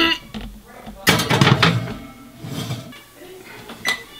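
A glass baking dish slid onto a metal oven rack and the oven door shut, a clattering burst about a second in. Just before the end comes a single short beep from the electric range's keypad as the bake time is set.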